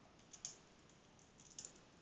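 Faint computer keyboard typing: a few scattered keystrokes, a small cluster about half a second in and a couple more near the end.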